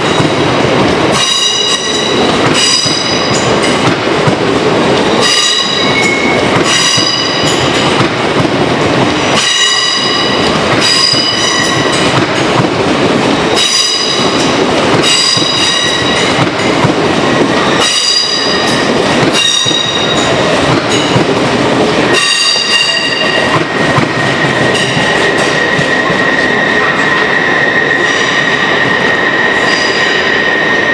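LNER Azuma multi-car train pulling slowly along the platform, its wheels clicking over the rail joints in a steady rhythm about every second and a half, each click with a short high metallic ring. About 22 seconds in, the clicking fades and a steady high squeal or whine takes over as the last cars go by.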